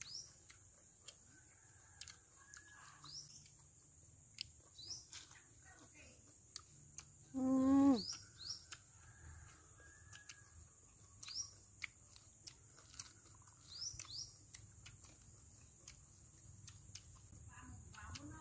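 Small birds giving short rising chirps every couple of seconds over a steady high hiss. About halfway through, a brief loud voiced call slides down in pitch.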